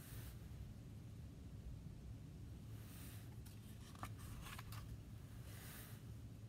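Mostly quiet room tone, with a few faint clicks and a soft paper rustle as a picture book's page is turned near the end.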